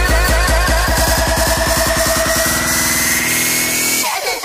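Electronic dance music build-up: a drum pattern speeds up into a fast roll while a synth sweep rises in pitch, the bass dropping out shortly before the end.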